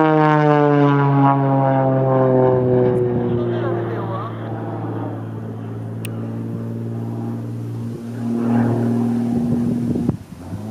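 Extra 300L aerobatic plane's six-cylinder piston engine and propeller droning overhead. The pitch falls steadily over the first few seconds, then holds lower and swells louder again near the end.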